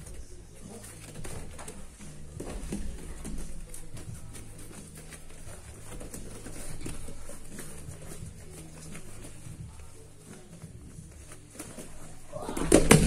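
Two grapplers hand-fighting standing on gym mats: bare feet shuffling and bodies brushing and gripping against each other.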